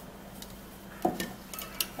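Light taps and clinks of a glass tumbler and container being handled on a countertop: quiet at first, then a short knock about a second in and a few sharp clicks near the end.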